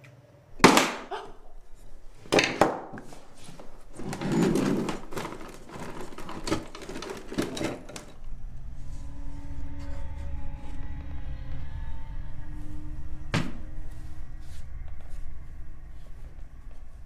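A locked wooden box being forced open: a series of sharp knocks and cracks over the first eight seconds, the loudest about half a second in. Then a low steady drone with faint held tones, broken by one more sharp knock a few seconds before the end.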